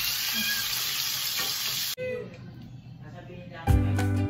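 Hot dogs sizzling as they fry in a pan while a wooden spatula stirs them; the sizzle cuts off abruptly about halfway through. Background music comes in near the end.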